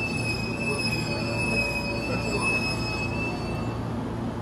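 Train wheels squealing on the rails: one steady high-pitched squeal that stops shortly before the end. A standing train hums low underneath.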